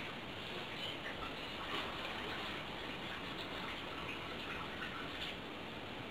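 Quiet room tone with a steady hiss and a few faint small clicks and knocks as a person moves about and settles onto a sofa.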